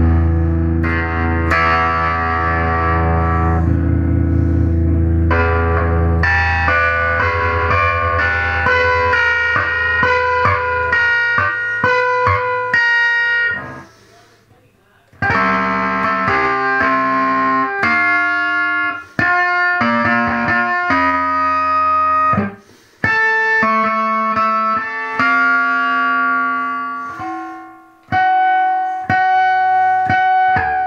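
SG electric guitar played through a Henretta Engineering Purple Octopus octave fuzz pedal. It opens with a few seconds of heavy, low chords, then moves to single-note lines higher up, with a brief stop about halfway through and a few short breaks after.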